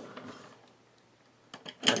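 A quiet pause with faint room tone, broken near the end by a few light clicks just before speech resumes.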